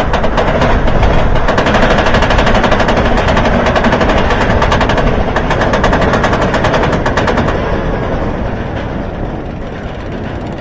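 Roller coaster train on its chain lift hill: the lift chain and anti-rollback dogs clatter in a rapid, steady stream of clicks. The clicking stops about seven and a half seconds in as the train crests the top.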